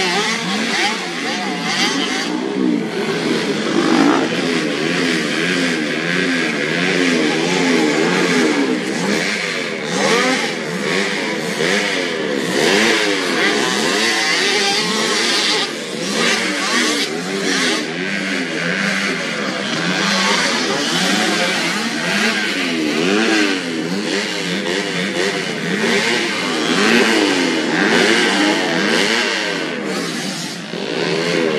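Several small youth motocross bikes running on a dirt track, their engines revving up and dropping back over and over as the riders open and close the throttle and shift, several engines overlapping.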